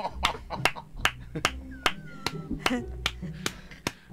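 Rhythmic hand clapping, about five sharp claps a second, with people laughing underneath.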